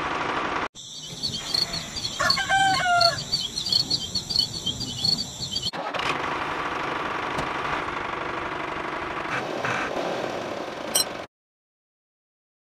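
Bird calls: a run of short, evenly repeated high chirps, with one longer pitched call about two seconds in. From about six seconds in comes a steady rushing noise, which cuts off abruptly to silence near the end.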